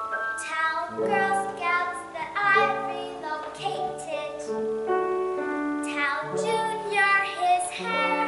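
A young girl singing a show tune solo, her voice carrying a melody of held and shifting notes, with piano accompaniment underneath.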